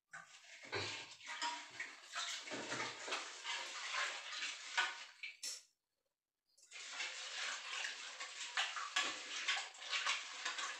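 Water splashing and sloshing in an aluminium pressure-cooker pot, with small metal clinks and a couple of dull knocks as the pot is handled. The sound cuts off completely for about a second just past the middle, then the splashing resumes.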